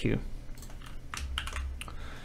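Typing on a computer keyboard: a quick, irregular run of key clicks as code is entered and edited.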